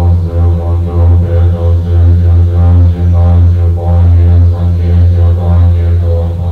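A pair of dungchen, Tibetan long telescopic horns, holding one deep, loud, steady note with a brief dip now and then.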